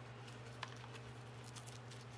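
Faint clicks and rustles of trauma shears being handled and seated in a nylon shear pouch on a belt, with one sharper click just over half a second in.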